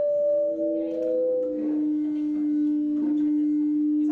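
Sustained ringing tones at two pitches, held steady, each dropping slightly lower about a second and a half in.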